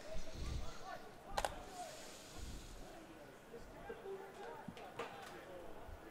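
Pitch-side sound of a football match: players' voices calling faintly across the field, with two sharp knocks of the ball being kicked, about a second and a half in and again near five seconds.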